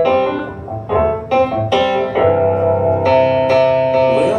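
Piano chords played on a stage keyboard, struck every half second to a second and left to ring, as the instrumental introduction of a song before the vocal comes in.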